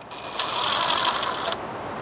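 Cordless brushless impact driver spinning freely as it backs out a loosened T30 thermostat-housing bolt, a steady whir that starts just after the beginning and cuts off about a second and a half in.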